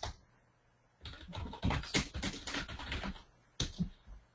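Typing on a computer keyboard: a quick run of keystrokes beginning about a second in and lasting a little over two seconds, then one more key press near the end.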